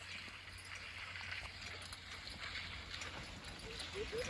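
Hoofbeats of a pair of Percheron horses walking steadily as they pull a plough through the field.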